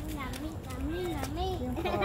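People talking, among them a child's voice, over a steady low rumble.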